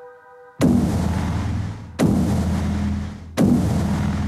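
Three loud electronic impact hits about a second and a half apart, each a sudden crash with a deep droning tail that fades before the next. The first hit cuts off a held synthesizer chord.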